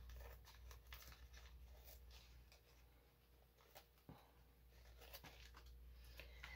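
Near silence, with faint scattered rustles and light ticks of coffee-filter paper being handled.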